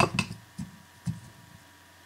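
Two soft, short knocks as a dirty soldering iron tip is cleaned, over a quiet room with a faint steady hum.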